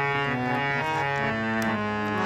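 Hand-pumped harmonium playing a melody of held reed notes that change every few tenths of a second over a sustained lower note.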